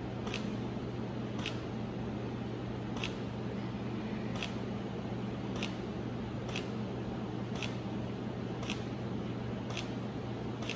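A camera shutter firing nine times, about once a second, as a run of photos is taken, over a steady low hum.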